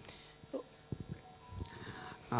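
Handheld microphone being passed from one speaker to the next: a few faint handling clicks and knocks about a second in, over quiet room tone.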